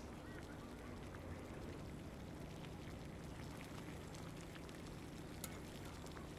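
Quiet room tone with a faint steady low hum, and a single faint click near the end.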